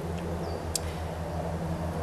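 A steady low mechanical hum with a slight regular pulse, with one short high chirp about half a second in.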